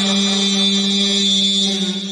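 A man's voice chanting in a melodic recitation style, holding one long steady note that eases off near the end.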